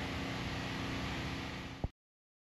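Steady outdoor background hiss, with no distinct source standing out. It ends in a single short click and cuts off abruptly to silence just before the end.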